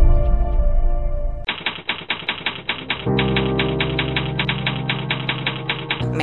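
Produced music: a held chord fades out, then a fast, even ticking like a typewriter sound effect sets in, about seven ticks a second. A low held chord joins about halfway through.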